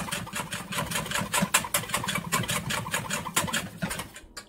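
Wire whisk beating fast against a stainless steel bowl, a quick steady rattle of strokes several a second. Egg yolks with cornstarch are being tempered with a little hot milk, whisked fast so the egg does not cook.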